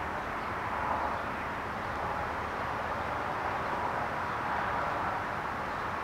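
Steady outdoor background noise, an even hum of distant ambience that swells slightly in the middle.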